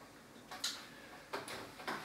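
Chalk on a blackboard: three short, faint strokes or taps of writing, the first about half a second in.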